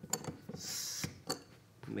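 Adjustable wrench working the travel-stop bolt of a rack-and-pinion pneumatic actuator as the stop is set: a few light metallic clicks, with a short rubbing noise in the middle.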